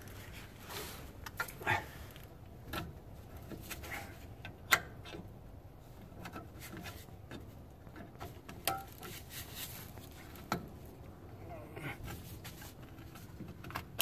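Brake hold-down spring tool working a drum brake shoe's hold-down spring and cup, which are pushed in and twisted to release the shoe. Scattered small metallic clicks and scrapes, the sharpest a single click about five seconds in.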